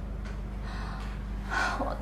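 A woman's soft audible breath, then her voice starting to speak near the end, over a steady low hum.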